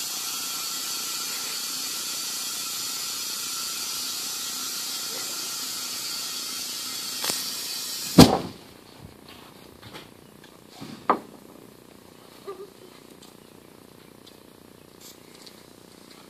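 A steady hiss for about eight seconds, then a single loud bang: starting fluid (ether) going off inside a trailer tire to blow the bead onto the rim. A few faint knocks follow.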